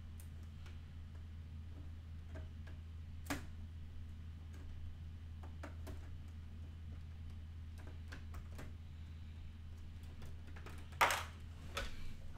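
Plastic Lego bricks clicking and knocking as they are handled and fitted: a scattering of light clicks every couple of seconds, with a louder knock about eleven seconds in. A steady low hum runs underneath.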